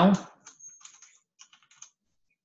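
Typing on a computer keyboard: two short runs of keystrokes, after the last word of a sentence in the opening moment.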